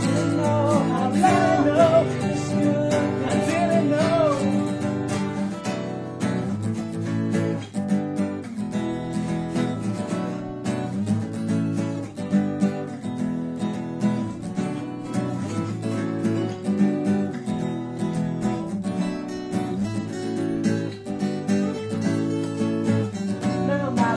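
Acoustic guitars strummed in a steady chord pattern, with a sung vocal line that ends about four seconds in; after that the guitars play on alone.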